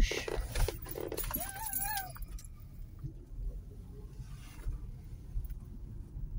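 Outdoor car-park ambience: a low, steady rumble, with a few sharp clinks and a brief voice in the first two seconds.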